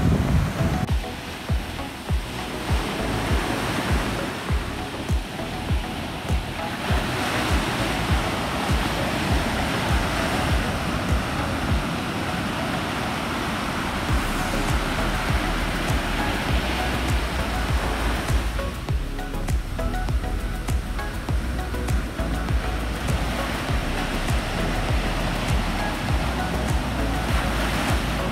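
Ocean surf breaking and washing in as a steady rush, under background music with a steady beat.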